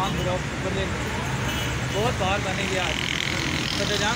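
A man's voice calling out a greeting over a steady low rumble of motor traffic.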